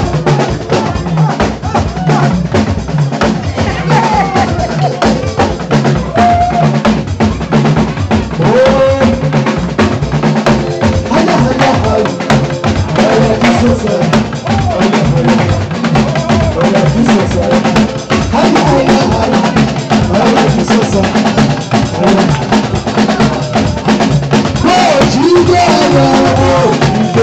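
Live band music: a drum kit plays a steady beat of bass drum, snare and rimshots under an electronic keyboard, with a melody line weaving above.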